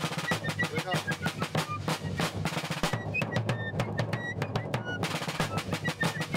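A snare drum beating a rapid marching cadence with rolls, many quick strokes without a break.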